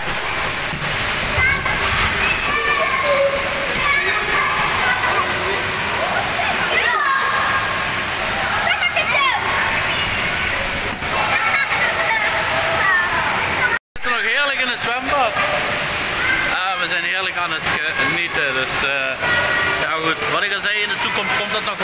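Steady rushing and splashing of water in a swimming-pool hall, with indistinct voices and calls over it. About 14 seconds in it cuts off abruptly, and voices continue over a quieter background.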